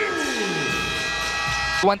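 A steady, buzzy electronic tone, with a lower tone sliding down in pitch during the first second; it cuts off abruptly just before the end.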